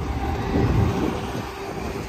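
A steady low mechanical hum with a rumble that swells and fades about half a second to a second in.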